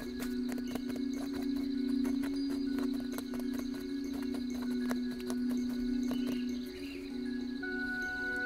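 Irregular clicking and tapping from a wooden kesi silk-tapestry loom as the weaver works the threads, thinning out in the second half. Background music with a sustained low chord plays under it.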